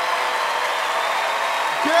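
Studio audience applauding and cheering in a steady, unbroken wash of noise, with a faint held tone underneath.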